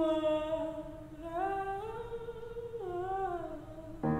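A soprano voice alone, without piano, holding a few slow notes that slide smoothly from one pitch to the next.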